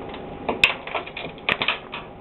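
A plastic screw bottle top clicking and clattering on a hard desk as the parrot handles it, in two quick bursts of light taps about half a second and a second and a half in.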